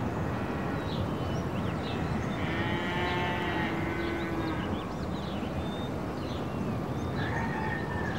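Farm ambience: a steady outdoor background with scattered bird chirps, and a farm animal's single long call of about two seconds a few seconds in.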